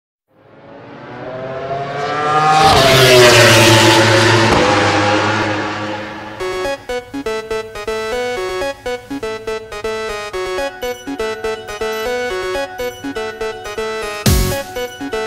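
A vehicle engine swells up and passes by, loudest about three seconds in, its pitch falling as it goes, and fades out by about six seconds. Then electronic background music with a steady beat starts and runs on.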